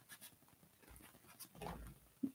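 Near silence: a few faint light clicks, with a soft breathy sound near the end.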